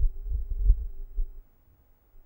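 Felt-tip marker writing on paper on a desk, picked up as a run of dull low thumps and rubbing strokes that stop about halfway through.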